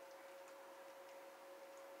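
Near silence: faint, irregular little clicks of cats chewing and licking wet cat food from a bowl, over a steady faint hum.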